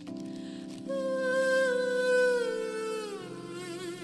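A buzzy hummed voice, sung through a plastic bag held against the mouth, over a sustained chord on a small toy keyboard. The voice enters about a second in, holds a note, then slides down in pitch and wavers near the end.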